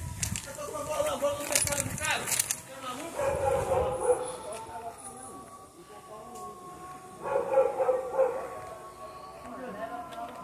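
Small scruffy terrier-mix dog barking and whining in short bouts: near the start, around three to four seconds in, and again near eight seconds.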